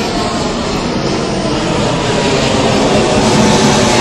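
Aircraft passing overhead at night, a steady engine roar that grows slightly louder.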